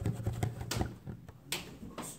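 A plastic water bottle partly filled with water is swirled by hand to spin up a vortex, giving a run of sharp clicks and knocks from the bottle and its flip cap. It ends with a louder knock as the bottle is set down on a table.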